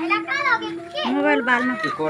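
People talking, children's voices among them.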